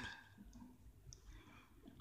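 Near silence: a pause between phrases of a spoken and chanted prayer, with the last of the previous phrase fading out right at the start.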